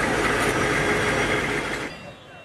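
Steady running of vehicle engines at a street scene. It cuts off abruptly near the end.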